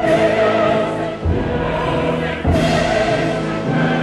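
Mixed chorus singing with a full symphony orchestra in a late-Romantic choral work, loud and full, with a new accented chord about every second and a quarter.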